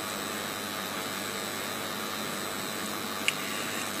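Steady background hiss of room tone with no speech, and one brief faint click about three seconds in.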